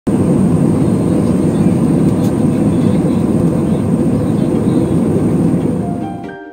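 Jet airliner cabin noise in cruise flight: the steady, loud rumble of the engines and rushing air heard from a window seat, with a thin high whine running over it.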